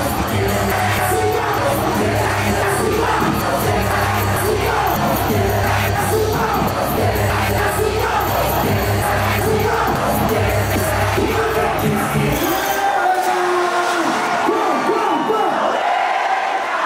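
Live hip-hop concert: a bass-heavy beat plays under the noise of a large crowd's voices. About thirteen seconds in, the beat's bass drops out, leaving mostly the crowd.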